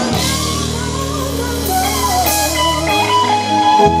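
Live rock band playing a power ballad: a lead electric guitar melody bending in pitch over bass, drums and keyboards.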